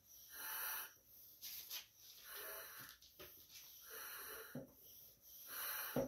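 Hand-pump vacuum oil extractor drawing engine oil up its tube from a lawn mower's crankcase through the dipstick tube, with faint hissing slurps of air and oil that come and go.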